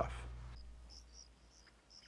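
The tail of background music fades out, and crickets chirp faintly, short high chirps at about three or four a second.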